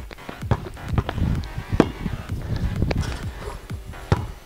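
Background music over a basketball bouncing and sneakers stepping on stone paving slabs, with several sharp knocks spread through.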